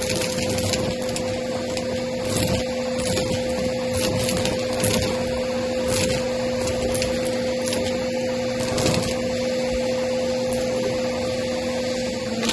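Vacuum cleaner running steadily through a crevice tool with an even motor hum, sucking confetti off a rug. Many small clicks and rattles come from pieces being pulled up the tube.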